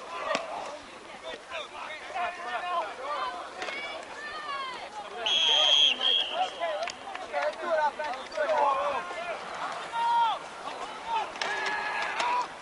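Many voices shouting and calling out at once along a football sideline. About five seconds in, a referee's whistle gives one short, shrill blast.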